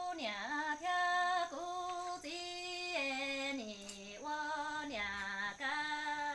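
A woman singing kwv txhiaj, Hmong sung poetry, solo and unaccompanied, as an orphan's lament: long held notes that step down between a few pitches and back up, with a slight waver on each.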